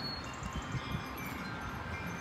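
Wind chimes ringing faintly, several sustained tones at different pitches overlapping, over a low outdoor background rumble.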